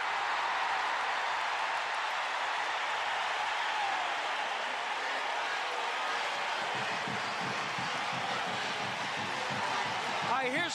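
Large stadium crowd cheering steadily, a reaction to a long completed pass and run that ends in a tackle.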